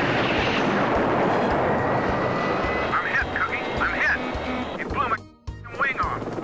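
Film trailer soundtrack: a loud rushing roar under music, then a string of short, high chirping sounds. The sound cuts out briefly near the end.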